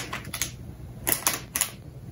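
Hand-held pepper mill being twisted, grinding peppercorns in a few short, irregular crunching clicks.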